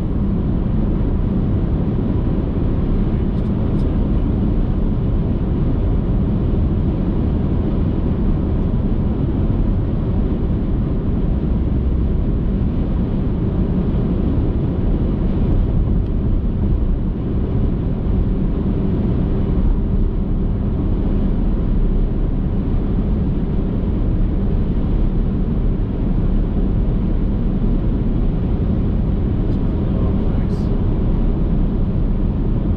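Steady low rumble of a car driving at highway speed: tyre and engine noise.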